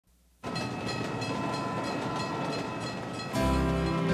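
A freight train rolls through a railway level crossing while the crossing's warning bell rings about three times a second. Music comes in a little after three seconds in.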